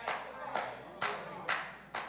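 Sharp hand claps repeated at an even beat, about two a second.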